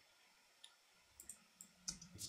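Near silence broken by a handful of faint computer mouse clicks, spread unevenly over the two seconds.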